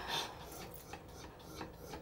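Faint rustling and rubbing of cloth and handling, with a few light clicks.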